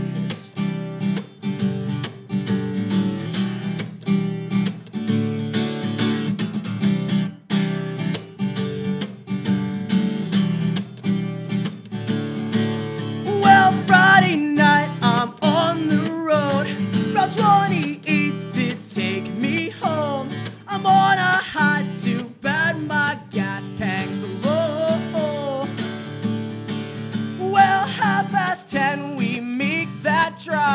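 Acoustic guitar strummed steadily in a regular rhythm. About halfway through, a man's singing voice comes in over the strumming and carries on in phrases to the end.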